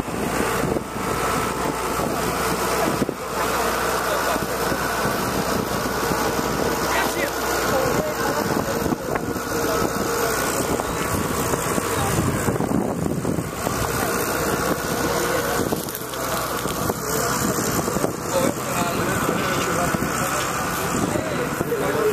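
An engine running steadily, with wind buffeting the microphone.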